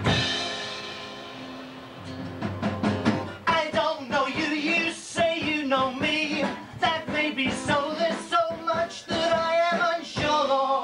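A rock band plays the song in the studio on bass, guitar and drums. A chord rings out at the start and slowly dies away. About three seconds in, drums and a wavering lead melody line come in.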